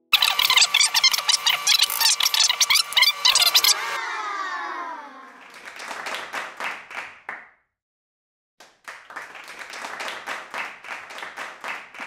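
Edited sound effects: a loud, dense crackle like clapping for about four seconds, then a few falling glides, then two runs of rapid clicking with a second of silence between them.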